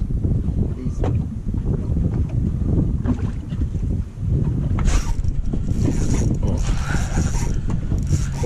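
Wind buffeting the microphone on a boat on open water: a loud, uneven low rumble that drops briefly about four seconds in.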